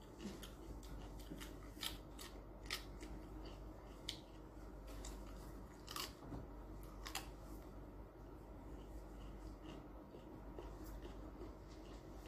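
Crisp bites and chewing of raw cucumber: about five sharp crunches in the first seven seconds, then fainter chewing ticks.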